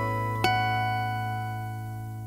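The closing chord of a song on guitar: one last strum about half a second in, left to ring out and fade away.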